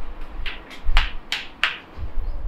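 Five short, sharp clicks, unevenly spaced over about a second and a half.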